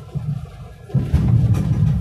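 Car cabin rumble of engine and tyres while driving on a winding road. It dips briefly, then comes back strongly about a second in as the car pulls on round a bend.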